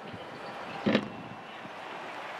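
Arena background noise, a steady wash of a sparse crowd, with one short sharp sound about a second in.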